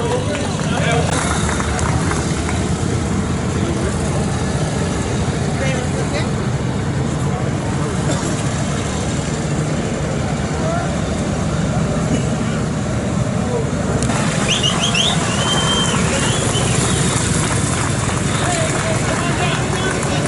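Several vintage motorcycle engines running steadily as the machines roll slowly in formation, with people talking faintly nearby.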